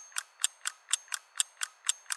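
Rapid, evenly spaced mechanical ticking, about four to five ticks a second, added in editing as a sound effect.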